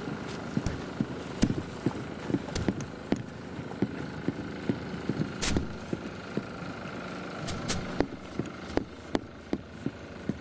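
Footsteps on dry dirt and knocks from a hand-held camera being carried across uneven ground, irregular and a couple per second, with a louder thump about halfway, over a steady background hum.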